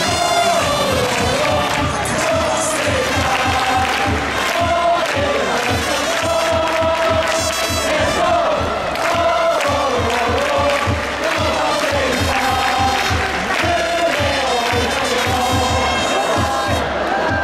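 Baseball stadium crowd chanting a cheer song in unison to music with a steady, regular drumbeat.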